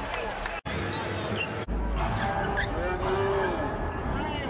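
Basketball game broadcast sound: arena crowd noise with a ball bouncing on the court. The sound changes abruptly about 1.6 s in, where the footage cuts to another game.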